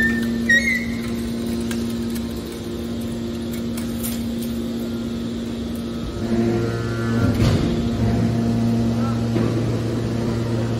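Hydraulic scrap-metal baler running with a steady hum from its hydraulic power unit. About six seconds in, a deeper hum joins it as the machine changes stroke, followed by a short rough scraping noise.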